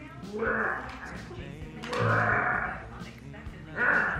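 Background music playing, with three short vocal cries over it: about half a second in, about two seconds in, and near the end.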